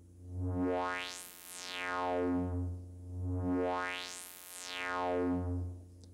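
A sustained synthesizer tone through the band-pass output of a Tenderfoot Electronics SVF-1 state-variable Eurorack filter, set to a little resonance. Its cutoff is swept by hand from low up to very high and back down twice, so the tone brightens and darkens and swells and dips in loudness with each sweep.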